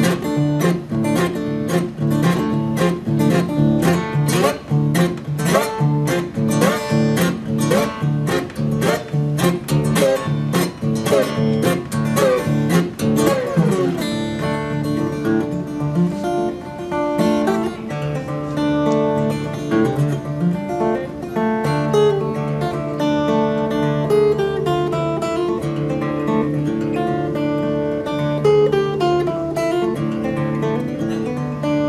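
Solo acoustic guitar played fingerstyle. For about the first fourteen seconds it plays quick, rhythmic picked strokes that end in a falling sweep, then slower ringing notes with rising slides between them.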